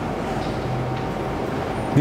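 Steady background rumble of room noise with a faint hum, with no distinct event standing out.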